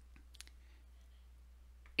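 A few faint clicks in the first half second over a low steady hum; otherwise near quiet.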